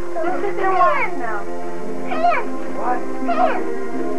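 Short high-pitched cries that swoop up and down, from excited young children, over steady background music with held notes.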